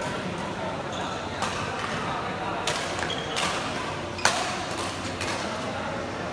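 Badminton rackets striking a shuttlecock during a doubles rally: several sharp, crisp hits roughly a second apart, the loudest about four seconds in, over background chatter of voices.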